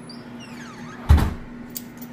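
A wooden closet door being swung open, with one loud thump about halfway through and a light click shortly after.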